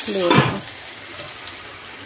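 French fries sizzling as they fry in oil in a frying pan, a steady hiss. A brief voice is heard in the first half second.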